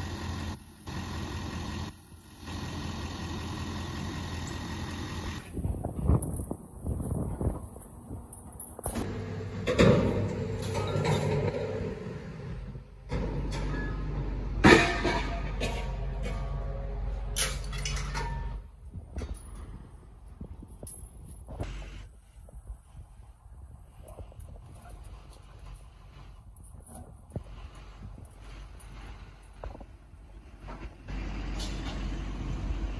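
Vehicle engine running with scrapyard truck and machinery noise over a series of short cuts, broken by a few loud sudden knocks, the loudest about ten and fifteen seconds in.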